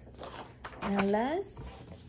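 A woman's short voiced utterance with a rising pitch about a second in, alongside a sheet of paper rustling as it is lowered and set down on a table.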